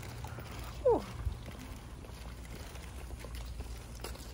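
Footsteps on a concrete sidewalk, with one short loud sound falling in pitch about a second in.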